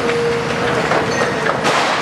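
Steel roof framework being cut and torn by a demolition excavator's shear: a steady metallic squeal during the first part, then grinding with a string of clanks and creaks.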